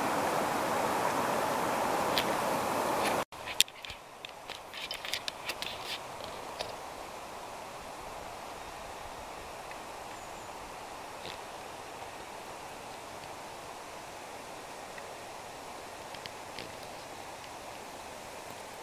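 Forest ambience: a steady rushing noise cuts off abruptly about three seconds in. A few seconds of scattered clicks and rustles follow, then a faint, even hiss.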